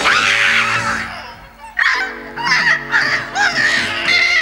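A cartoon cat screeching: a sudden loud yowl at the start, then more wavering yowls in the second half, over background music.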